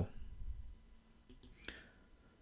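A pause in the narration: the voice dies away, leaving low room tone with a couple of faint clicks about a second and a half in.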